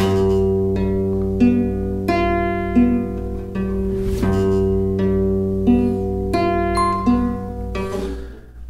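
Nylon-string classical guitar fingerpicked at a slow, even pace through a G7 arpeggio: a bass note on the sixth string, then the third, second, first, second and third strings, with each note left ringing. The pattern is played twice.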